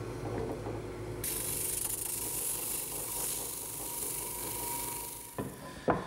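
Drill press running with a 100-grit drum sander, sanding the tight curves of a teak workpiece: a steady motor hum with a rasping hiss that joins about a second in. The machine stops near the end, followed by a couple of light knocks.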